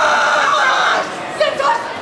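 A long held shout, a martial artist's kiai, lasting about a second and a half and breaking off about a second in, over crowd chatter. Short voice sounds follow in the second half.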